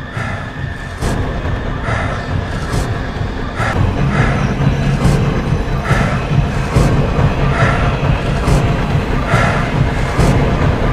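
Film trailer soundtrack: dramatic music with a regular pulse about once a second, growing louder, with a heavy low rumble building from about four seconds in.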